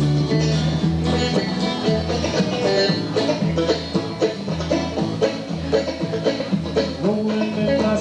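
Live bluegrass-style band playing an instrumental break: an upright bass plays a steady, evenly spaced beat of low notes under acoustic and electric guitars picking the melody. No singing until the next verse.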